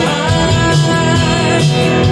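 A rock song played live on electric guitars through amplifiers, with sung lead vocals over a steady beat.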